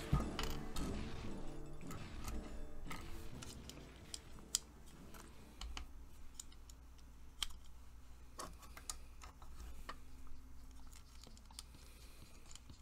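Light, irregular clicks and taps of small hard plastic parts being handled and fitted together: the housing, pins and gears of a toy robot hand's plastic gearbox with its small motor.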